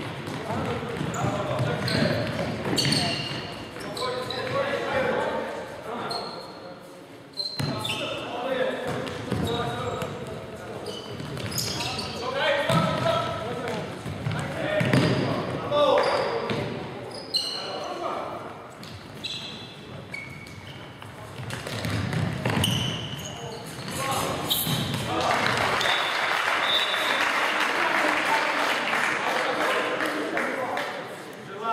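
Futsal play in an echoing sports hall: players shouting to each other and the ball being kicked and bouncing on the wooden floor. A steadier wash of noise fills the last few seconds.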